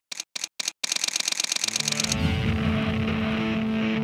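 Camera shutter clicks: four or five single shots with silence between them, then a rapid continuous-shooting burst of about ten clicks a second that lasts about a second. Music with held tones comes in about halfway and carries on.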